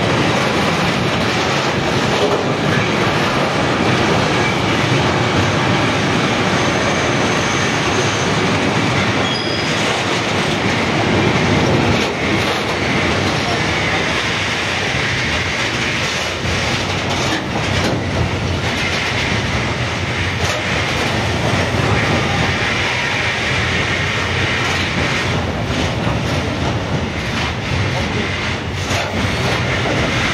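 Container freight train's wagons rolling past at close range: a steady rumble of steel wheels on the rails, with clicks as the wheels cross rail joints.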